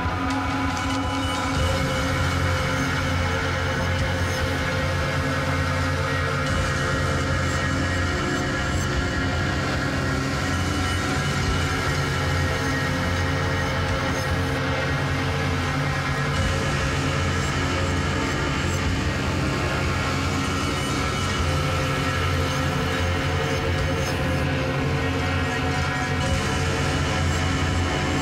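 Experimental noise-collage music: a dense, steady drone of many layered sustained tones over a heavy low rumble, with no clear beat and a grinding, mechanical texture.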